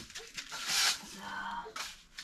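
Broom with stiff plastic bristles sweeping a concrete floor: two brushing strokes, a longer one about half a second in and a short one near the end.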